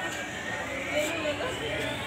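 A motor vehicle's whine rising steadily in pitch, as of a vehicle accelerating, with faint voices around it.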